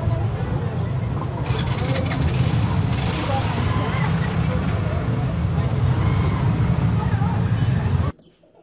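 Busy market street ambience: many passers-by talking at once over a steady low rumble of road traffic.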